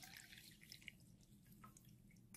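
Near silence with a few faint drips: brewed coffee liquid dripping through a fine stainless-steel mesh strainer into a glass bowl.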